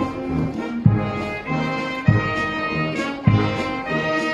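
Military brass marching band playing a march: sustained brass notes over a bass drum striking about once a second.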